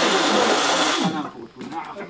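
A loud, steady hissing noise with men's voices over it stops abruptly about a second in. After it come a man's speech and a few light knocks.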